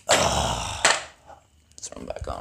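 Handling noise as a string trimmer is moved close to the camera: a loud rough rustle lasting about a second, ending in a sharp knock.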